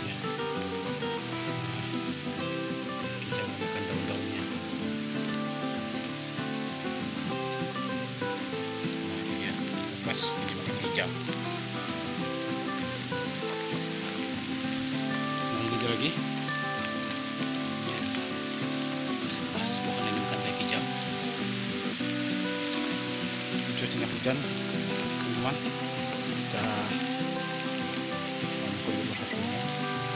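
Background music with a held, stepping melody, over a steady hiss like light rain, with a few sharp clicks or snaps.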